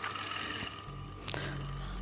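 Industrial sewing machine's electric motor switched on about a second in, then running with a steady low hum. A few faint clicks come before and during it.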